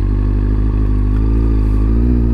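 Kawasaki ZZR600's inline-four engine idling steadily while stopped.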